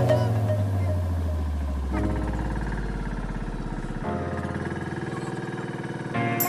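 The engine of a small motorised outrigger boat (bangka) running steadily under background music. The music's low bass note slides down and fades out over the first few seconds, and the beat returns at the very end.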